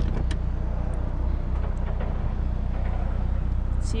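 A Mercedes-Benz GLS liftgate latch clicks open as the handle is pulled, then the liftgate rises with a steady mechanical hum. A constant low rumble runs underneath.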